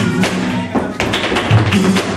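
Flamenco guitar playing alegrías, with sharp taps of a dancer's footwork and hand-claps (palmas) cutting through it.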